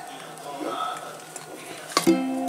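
Quiet room with faint, indistinct voices in the background.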